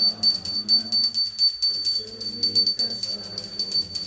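Devotional arati music: singing over a hand bell that rings continuously at a steady high pitch, and hand cymbals (kartals) struck in a steady beat of about four strikes a second.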